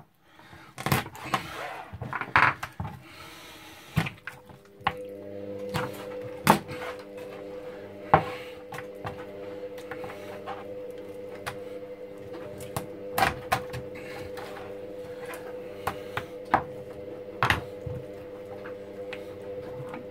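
Scattered sharp knocks of a cleaver and pieces of rabbit meat hitting a plastic chopping board while a rabbit carcass is jointed. About five seconds in, a steady hum of several tones starts up underneath and keeps going.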